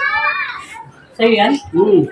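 Only speech: loud, high-pitched voices talking in two short bursts, at the start and again after about a second.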